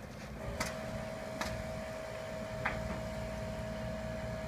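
Steady low engine hum with a steady high tone that comes in about half a second in, and a few faint sharp knocks.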